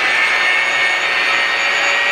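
Electric hand mixer running steadily, its beaters churning a thick black-bean, egg and cocoa batter in a stainless steel bowl, with a steady motor whine.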